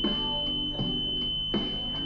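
Bus vandal-lock alarm buzzer sounding a steady high-pitched tone as the rear-door lock is latched with the vehicle running: the warning that the lock has been engaged while the bus is on. Background guitar music plays under it.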